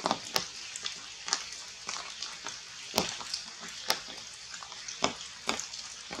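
Irregular sharp ticks and crackles in tree foliage, a few a second, over a steady hiss; the loudest come about three and four seconds in.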